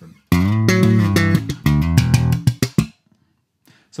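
1966 Fender Jazz Bass with Rotosound strings, played slap-and-pop style: a one-bar funk phrase of thumb slaps, popped notes and ghost notes. It starts about a third of a second in and stops about three seconds in.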